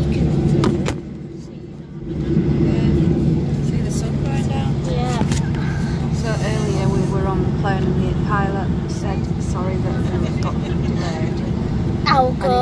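Steady low drone of an airliner's engines and cabin air heard inside the passenger cabin, with a constant low hum. The drone dips briefly about a second in, then returns, with voices over it in the second half.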